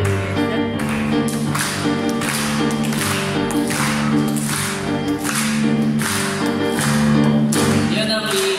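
Piano accompaniment on a digital piano: sustained chords over a bass line, with a steady beat of sharp strokes about twice a second.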